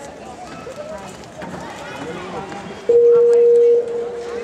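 Background chatter of an arena crowd, then about three seconds in a loud, steady, single-pitched electronic beep. It holds strongly for about a second, then continues more faintly.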